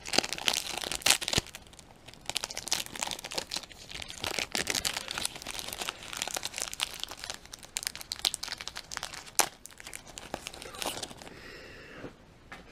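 Plastic-foil wrapper of a baseball card pack being torn open and crinkled by hand as the cards are pulled out. The crackling is densest in the first second or so, then goes on as lighter rustling with a few sharp snaps.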